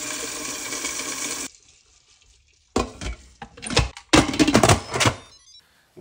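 Tap water running into a stainless steel bowl of dried lima beans in the sink, stopping about a second and a half in. After a short silence, a run of sharp clicks and knocks follows.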